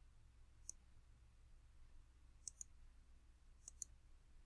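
Faint computer mouse clicks over a low steady room hum: one click about a second in, then two quick pairs of clicks later on.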